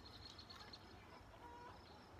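Near silence: faint outdoor background with a few soft, short, repeated notes from a distant bird.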